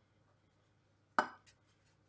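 A single sharp knock from a metal muffin tin as pastry is pressed into one of its cups, ringing briefly, followed by a fainter click; near silence before it.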